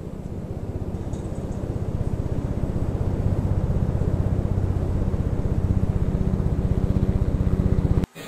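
A motor running with a fast, even pulse, growing louder over the first few seconds, then holding steady until it cuts off suddenly.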